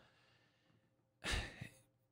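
Near silence, broken about a second in by one short breath from a man sitting close to a microphone.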